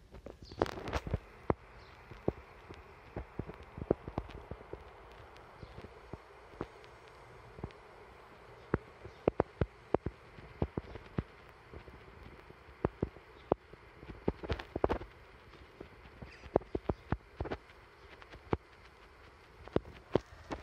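Irregular sharp clicks and taps, some single and some in quick clusters of several a second, over faint steady background noise.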